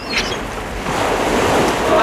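Wind and choppy harbour water washing and lapping, with wind rumbling on the microphone.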